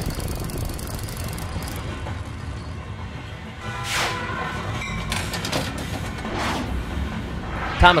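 Background rock backing track with electric guitar.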